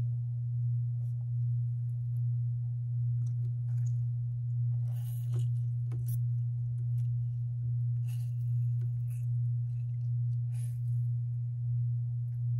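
A steady low hum, gently pulsing in level. Over it come a few brief soft squishing rustles as wet play sand is squeezed between the hands, about five seconds in and again near eight to nine seconds.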